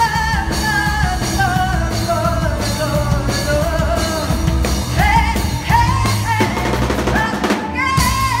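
A live rock band playing, with a woman singing lead over electric guitar, bass, keyboard and drum kit; she holds long notes that slide slowly downward, then climb again about five seconds in.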